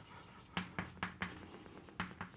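Chalk writing on a blackboard: a handful of short, sharp taps and scrapes as letters are written.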